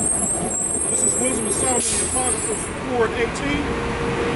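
Road traffic going by on the adjacent street, a steady rumble, with a thin high-pitched whine over the first two and a half seconds and a short hiss near the two-second mark.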